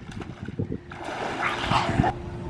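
Water splashing in a swimming pool as a child dunks under, starting about a second in.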